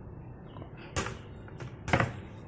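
Two sharp knocks of a plastic bowl, about a second in and near the end, as it is handled over the cooking pot and set down on the counter after pouring off the broth, over a low steady background noise.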